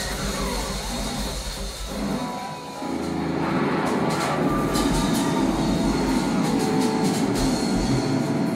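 Live rock band playing an instrumental jam passage. A low droning section thins out briefly about two and a half seconds in, then a fuller, denser band sound comes in with repeated cymbal strokes.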